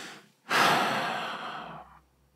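A man's audible sigh: a loud breath out through the mouth that starts about half a second in and fades over a little more than a second, following the tail of a breath in.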